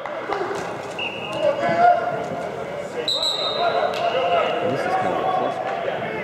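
Practice-field ambience in a large indoor hall: several voices of players and coaches calling and talking over one another, echoing, with scattered thuds.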